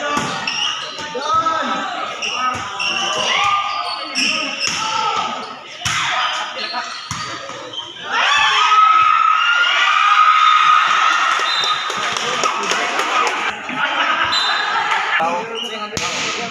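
Volleyball rally: a few sharp smacks of the ball being hit, under players and onlookers shouting and calling, which grows louder from about halfway through.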